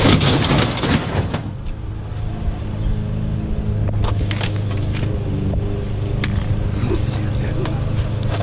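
Metal wire grid panel clattering as it slides into a pickup truck bed. Then a vehicle engine runs with a steady low hum that rises a little about halfway through, with a few light knocks as a cinder block and metal crutches are handled.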